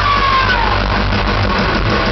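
Live rock band playing in a large hall, recorded loud and somewhat distorted from within the crowd, over a steady bass. A held high note slides downward and fades out about half a second in.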